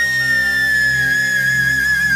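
A flute holds one long high note that sinks slightly in pitch, over steady low backing from a live band.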